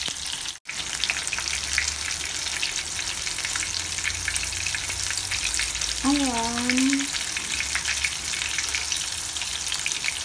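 Breaded fish fillets shallow-frying in hot oil in a pan: a steady, dense sizzle full of fine crackles. The sound cuts out for an instant about half a second in.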